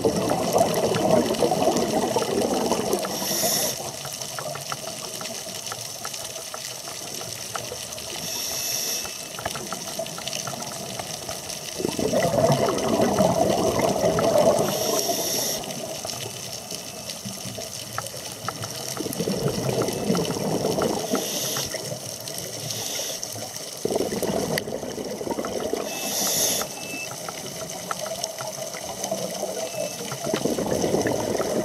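Scuba diver's regulator breathing underwater: a short hiss with each inhale, then a long rush of bubbling exhaust bubbles on each exhale, repeating in slow, irregular breaths.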